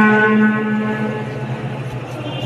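A single steady, horn-like electronic tone that starts abruptly and fades away about a second in, over a steady low hum.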